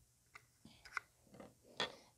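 Faint handling noise of plastic mic flag parts: about half a dozen light clicks and taps as the frame and its snap-off bottom piece are picked up and moved, the loudest about a second in and near the end.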